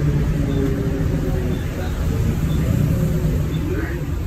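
Volvo B12BLE bus heard from inside the cabin while driving: a steady low rumble of its rear-mounted six-cylinder diesel engine and road noise, with faint drivetrain tones shifting in pitch.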